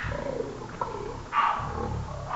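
A low, growl-like rumble with a hissy burst about one and a half seconds in.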